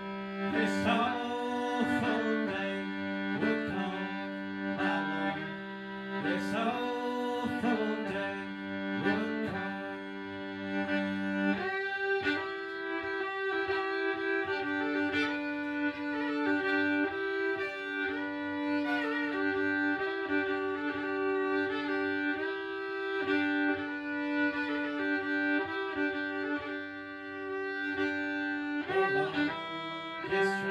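Fiddle playing an instrumental break of a folk song, the bowed melody moving over held low drone notes. The drone notes change about halfway through.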